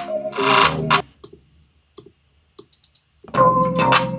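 Playback of a trap beat in progress: a sampled keyboard loop with bass and fast hi-hat ticks. It stops about a second in, leaving a few lone ticks, and starts again near the end.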